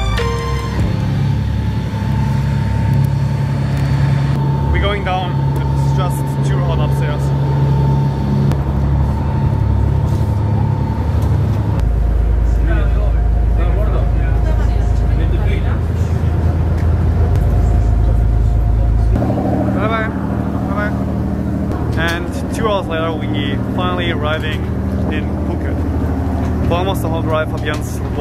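A ferry's engines running with a steady low drone, which shifts abruptly about twelve seconds in and again about nineteen seconds in. Indistinct voices come and go over it.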